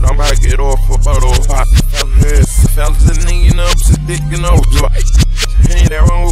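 Hip-hop track played backwards: reversed rap vocals over a deep, steady bass line and reversed drum hits. The bass shifts briefly about four seconds in.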